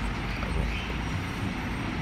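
Steady low background rumble without speech.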